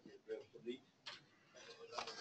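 Faint, indistinct voice sounds, then a single sharp click about a second in.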